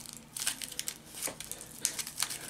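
Aluminium foil being crumpled and squeezed by hand around a wire armature: quiet, irregular crinkling.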